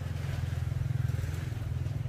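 Steady low drone of a running engine or motor, with a fast, even pulse and no change in speed.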